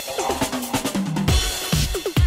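Fast electronic dance music from a DJ mix. The steady kick drum, about four beats a second, drops into a drum-roll fill with a rising noise wash, and the kicks come back near the end.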